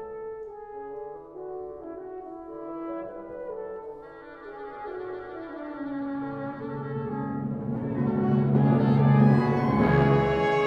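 Symphony orchestra playing live: soft sustained chords that swell into a loud crescendo near the end, with brass prominent.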